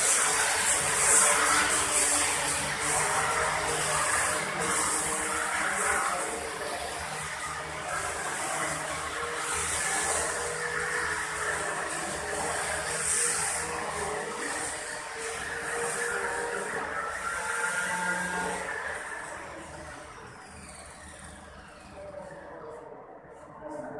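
Steady rushing hiss of running machinery or air flow, slowly fading near the end.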